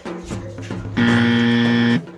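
Background music, then about a second in a loud, steady buzzer tone, like a game-show buzzer sound effect, that lasts about a second and cuts off suddenly.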